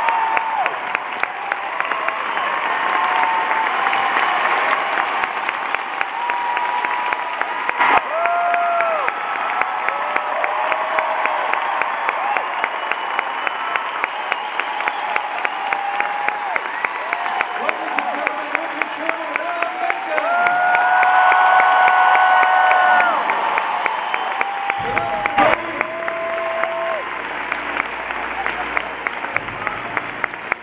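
A large theatre audience gives a standing ovation, with a dense wash of applause and voices calling out and whooping over it. From about a third of the way in, the clapping falls into an even beat, and it thins toward the end.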